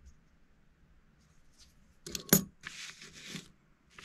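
A metal coin set down on a table clinks sharply against other coins a little over two seconds in, followed by about a second of paper banknotes rustling under a hand.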